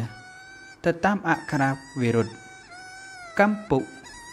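A man narrating in Khmer. Soft sustained background music tones, like a flute, fill the pauses between his phrases.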